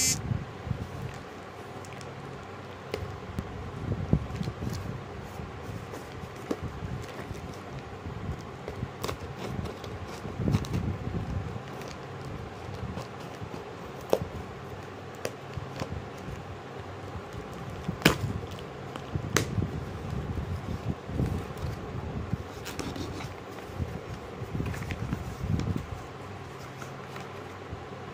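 Cardboard shipping box being cut open with a knife blade: scraping and tearing through packing tape and a paper label, with the cardboard flaps rustling. A few sharp clicks come in the second half.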